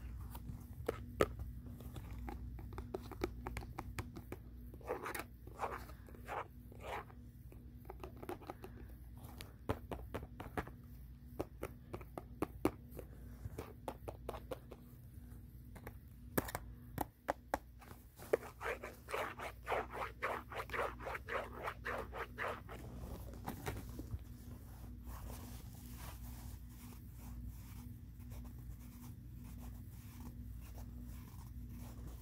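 Fingernails tapping and scratching on a cardboard Band-Aid box: scattered sharp taps, with a run of quick scratching strokes about two-thirds of the way through.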